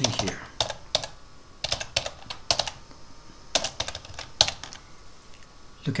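Computer keyboard being typed on: a run of sharp, irregular key clicks as a short line of text is entered.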